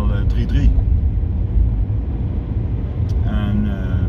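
Car engine running inside the cabin, a steady low rumble.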